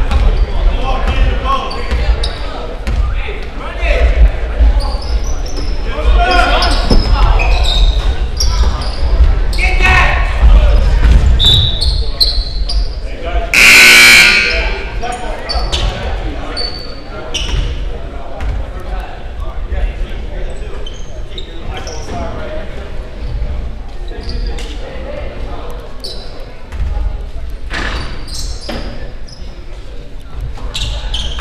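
Basketball being dribbled on a hardwood gym floor amid echoing crowd chatter and sneaker noise in a large hall. About halfway through comes one loud, shrill blast lasting under a second, the loudest sound in the stretch.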